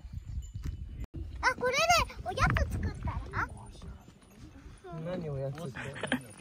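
A young child's very high voice calling out and chattering, with a lower adult voice speaking near the end. The sound drops out briefly about a second in.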